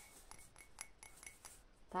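Light taps on a ceramic mug: a quick, faint run of about half a dozen clinks, roughly four a second, each with a short ring.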